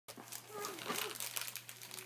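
Gift wrapping paper crinkling in a child's hands as she handles a present, in quick irregular crackles.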